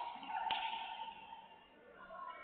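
A single sharp crack, like a slap or smack, about half a second in, over indistinct voices that fade away.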